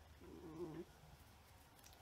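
A dog gives one short, low grumble lasting about half a second. It is alerting to a noise it takes for an intruder.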